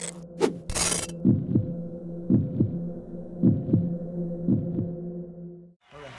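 Heartbeat sound effect: four pairs of low thumps, about one pair a second, over a steady electrical hum. A burst of static-like hiss comes in the first second, and everything cuts off shortly before the end.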